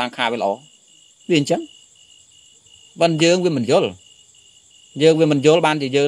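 A man speaking Khmer in short phrases with pauses, giving a Buddhist sermon, over a steady, pulsing high chirping of insects in the background.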